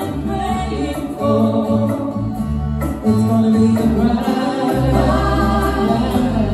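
A live band playing, with two female singers singing together over electric bass, keyboards, drums and acoustic guitar.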